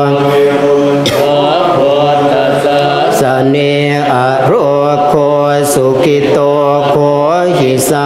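Thai Buddhist monks chanting Pali blessing verses in unison. The many voices merge into a steady low drone, with smooth rises and falls in pitch at the ends of phrases.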